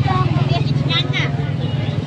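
Motor scooter engine idling steadily, a low even hum, with people talking over it.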